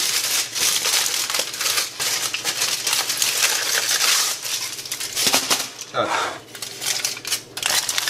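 Aluminium kitchen foil crinkling as it is handled and pressed down over the top of a paper cup, with a brief lull about six seconds in.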